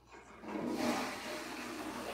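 Toilet flushing: a rush of water that starts about half a second in and keeps going steadily.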